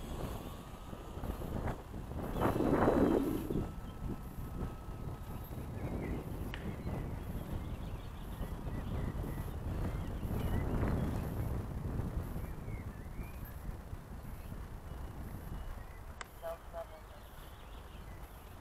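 Electric RC model plane's motor and propeller whining as it passes close overhead, loudest about three seconds in, then fading as it flies off. Wind on the microphone runs throughout.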